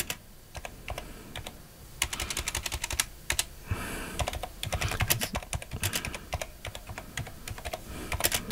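Typing on a computer keyboard: a few scattered key clicks at first, then fast runs of keystrokes from about two seconds in, with a brief pause in the middle.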